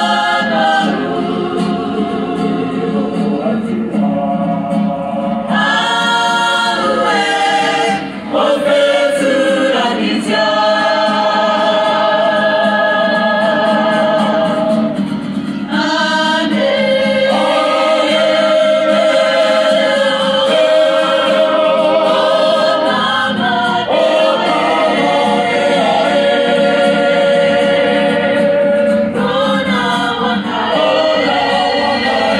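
Māori kapa haka group singing together in chorus, with long held notes and vibrato. The phrases break off briefly about eight and fifteen seconds in.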